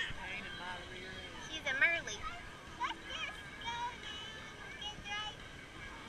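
Background chatter of many voices, mostly high children's voices calling and shouting, over a steady hiss of open-air crowd noise; the loudest call comes just before two seconds in.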